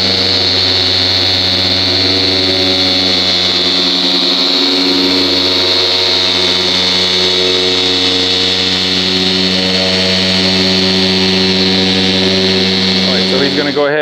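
Random orbital polisher running steadily at speed six on car paint, a motor hum with a high whine. It is switched off near the end and spins down quickly.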